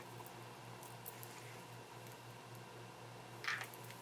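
Faint room tone with a steady low electrical hum, a few soft handling ticks, and one brief hiss about three and a half seconds in.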